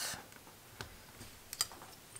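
Two faint clicks less than a second apart as a thin blade cuts down through a polymer clay cane and meets the work surface.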